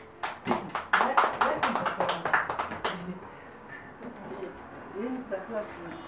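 A few people clapping in a small room for about three seconds, then stopping.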